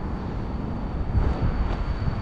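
City street noise: a low, uneven rumble of traffic and wind on the microphone.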